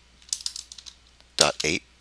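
Computer keyboard keys tapped in a quick run of light keystrokes in the first second, typing the digits of a DNS server address.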